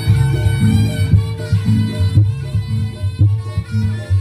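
Reog Ponorogo accompaniment music played loud: a driving drum rhythm under a sustained pitched instrument line.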